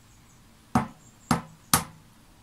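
Three sharp taps, about half a second apart, as the shell of a hard-boiled egg is knocked to crack it open.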